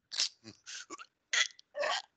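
A man's short, breathy vocal sounds without words: about five separate bursts with silent gaps between them.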